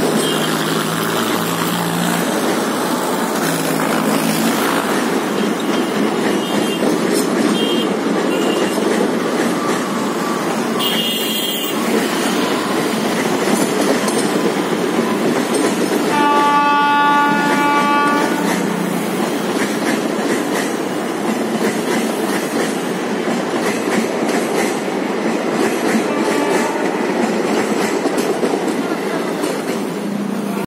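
A passenger train of ICF coaches rolls steadily past with a continuous rumble and clatter of wheels on rail. A little past halfway a train horn blows once, for about two seconds.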